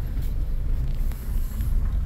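Steady low rumble of a Chevrolet pickup heard from inside the cab as it drives slowly.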